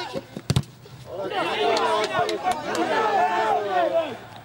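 Several men shouting over each other on a football pitch, after a short, sharp thump about half a second in.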